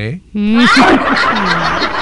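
Laughter breaking out about a third of a second in: a voice drops in pitch, then goes into a drawn-out laugh that carries on.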